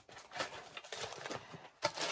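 Packaging crinkling and rustling as it is handled, a dense run of small crackles with one sharper crackle near the end: a plastic package of planner stickers being picked up and opened.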